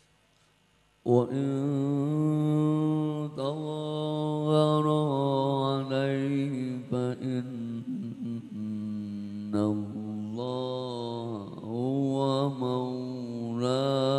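Male qari's solo melodic Arabic recitation in tilawah style, sung into a handheld microphone: long held notes with ornamented, wavering turns, starting about a second in after near silence.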